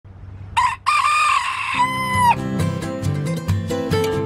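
A rooster crowing once: a short first note, then a long drawn-out note that drops slightly at its end. Acoustic guitar music comes in near the end of the crow and carries on after it.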